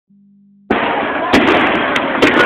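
Aerial fireworks shells bursting: sharp bangs about two-thirds of a second in, again near the middle and at the end, over a dense steady rush of noise.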